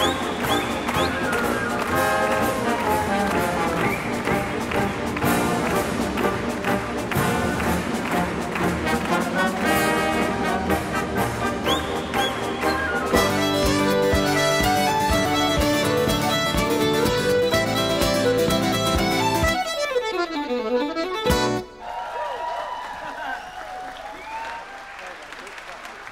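Orchestral music with prominent brass. About halfway through, an accordion, guitars and fiddle join in with a strongly rhythmic passage. The music ends about 21 s in, and audience applause and cheering follow.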